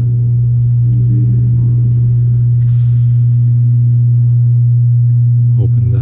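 Loud, steady low hum, with fainter steady tones above it and a brief soft hiss about three seconds in.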